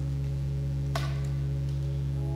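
Organ holding a steady sustained chord between sung phrases of a psalm, with a soft click about a second in.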